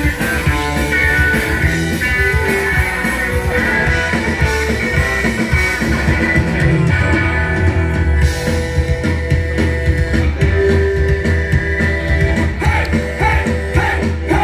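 Rock band playing live through a PA, an instrumental stretch with electric guitar to the fore and no vocals, heard from the crowd.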